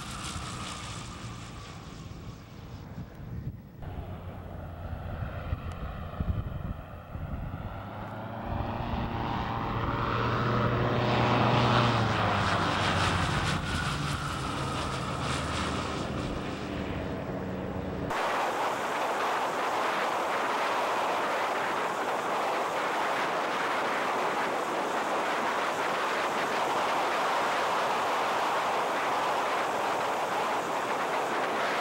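Ultralight trike engine and propeller passing low and fast, its pitch bending up and then down as it goes by, loudest a little before halfway. A little past halfway the sound cuts to a steady rush of engine and wind heard from a camera mounted on the trike.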